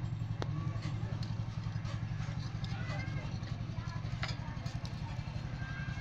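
A steady low mechanical hum with a fast pulse, with a few faint clicks.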